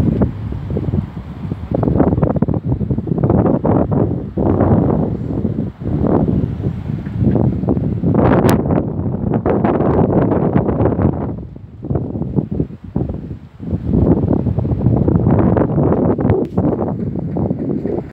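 Wind buffeting the microphone in uneven gusts, a loud low rumble that eases for a couple of seconds partway through.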